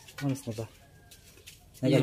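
A man says one short word, then a quiet pause in which a faint bird call can be heard in the background.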